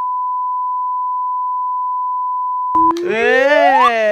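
A steady, unwavering electronic beep tone held for nearly three seconds, the kind of censor bleep laid over a cut-out scene, stopping abruptly. Near the end a voice comes in, drawn out and sliding up and down in pitch.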